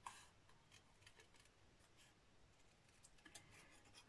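Near silence with a few very faint, scattered snips of small paper-craft snips cutting around a stamped paper image.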